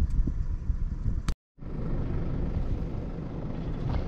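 Low, steady wind rumble on the microphone of an outdoor handheld recording. About a second and a half in, the sound drops out completely for a moment at an edit, then the rumble resumes.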